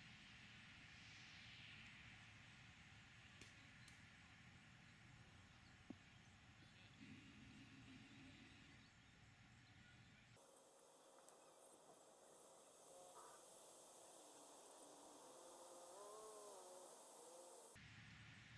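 Near silence: faint outdoor ambience, with a few faint rising-and-falling calls in the last few seconds.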